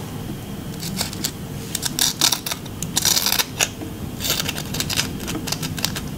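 Crunchy crinkle-cut potato chips crackling and clicking in quick, irregular snaps, with a denser burst of crackle about three seconds in.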